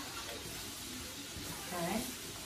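Sliced vegetables sizzling steadily in olive oil in a frying pan while being stirred with a spatula.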